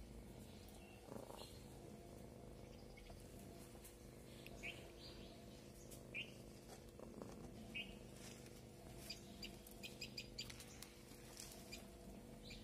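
Near silence: a low steady hum with a few faint, short high chirps like distant birds, a second or two apart, and a run of faint ticks near the end.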